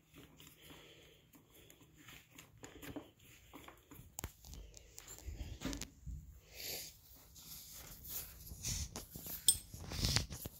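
Faint, irregular rustling and small knocks of a climbing rope being handled and slid along a climbing harness, close to the microphone.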